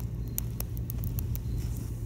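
A lit wax crayon burning and dripping melted wax, with faint irregular crackles over a steady low background rumble.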